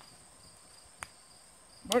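Crickets chirring steadily as two thin high tones. About a second in, a single sharp click as the Zastava M57 pistol's slide is set down on a wooden table.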